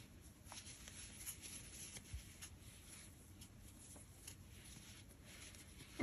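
Near silence, with faint scattered small ticks and rustles of hands working a crochet hook through bulky cotton yarn.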